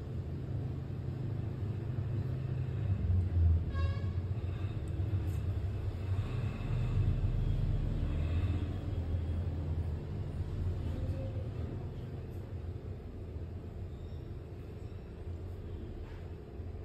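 A low background rumble that swells about three seconds in and again from about six to nine seconds, with faint higher tones over it.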